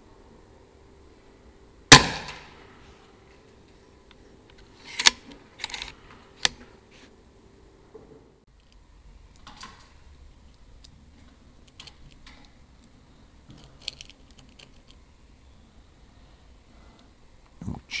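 A Daystate Alpha Wolf .22 (5.5 mm) PCP air rifle fires a single shot about two seconds in, a sharp crack with a short fading tail. A few sharper mechanical clicks follow, then faint small clicks as pellets are loaded into the rifle's magazine by hand.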